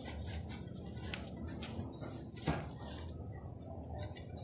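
A cloth rag wiping and scrubbing inside a plastic license-plate light housing from a VW Beetle, held close to the microphone: a run of irregular short rubbing strokes with a soft hiss.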